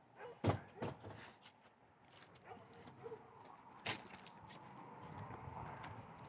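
Faint knocks from a car's front seat back being handled, about half a second and one second in, then a single sharper click near four seconds.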